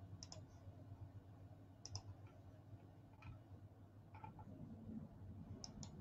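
A handful of faint, sharp clicks at uneven gaps, several in quick pairs, over near-silent room tone.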